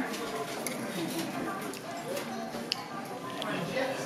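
Indistinct voices of people talking nearby over a steady background murmur, with a single sharp click, like a utensil on a plate, a little under three seconds in.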